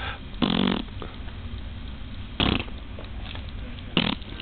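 Short coughs: one about half a second in, another about two seconds later and a third at the very end.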